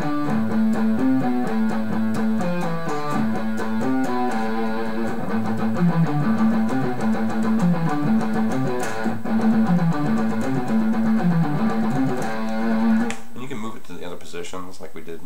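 Electric guitar played slowly as a picking exercise: three A notes on the low E string, then a walk down F-E-D on the A string, then three more A's and a walk down C-B-A on the low E. The pattern is repeated at an even tempo and stops about a second before the end.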